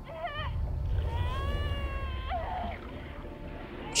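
High, wavering cries from the episode's soundtrack: a short one at the start, then a long held cry that rises slightly and breaks off, then another short one, over a low droning rumble.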